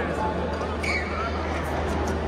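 Indoor badminton hall sound: background voices over a steady low hum, a short squeak about a second in, and a few light clicks near the end.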